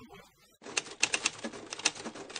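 Typewriter keystroke sound effect: a quick, irregular run of sharp clacks, about five a second, starting about half a second in as the title text types itself out.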